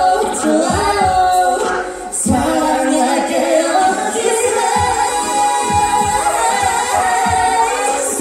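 Live R&B duet: a woman and a man singing into microphones over a backing track with a steady beat, amplified through the hall's PA.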